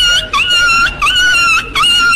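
A dog's high-pitched whimpering whine, repeated about four times. Each whine lasts about half a second, holds one clear pitch and opens with a quick dip.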